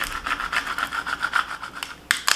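Plastic scraper tool rubbed back and forth in quick repeated strokes over transfer tape on a vinyl decal sheet, burnishing the tape down onto the vinyl.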